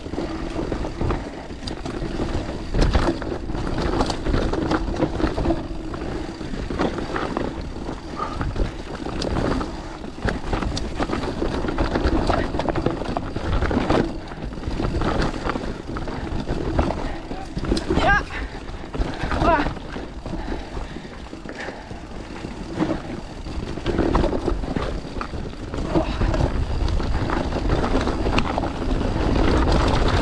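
Mountain bike riding fast down a dry dirt forest trail: continuous tyre and ride noise with frequent knocks and clatter from the bike over roots and rocks, under a low rumble of wind on the microphone.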